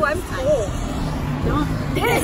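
Women's voices, words unclear, over the steady low rumble and wind noise of a moving golf cart.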